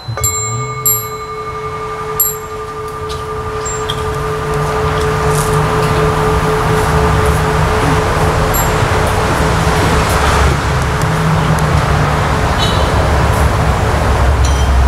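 A bell struck once, its single tone ringing on and slowly fading over about twelve seconds. Underneath it, a low rumbling noise grows steadily louder.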